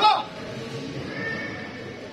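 A man's loud shout, falling in pitch, cuts off about a quarter second in; after it, the crowd chatters in the hall.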